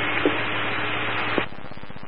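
Police scanner radio static: a steady hiss over a low hum on an open channel with no voice, dropping in level about one and a half seconds in.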